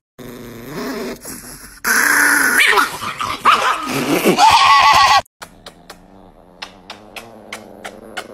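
A chihuahua growling, a long wavering grumble that gets loud about two seconds in and rises in pitch toward the end, cut off sharply about five seconds in. Then a run of short smacking clicks as the dog's mouth works at a man's face.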